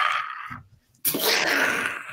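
Loud, breathy laughter from the hosts in two outbursts: a short one at the start and a longer, louder one from about a second in.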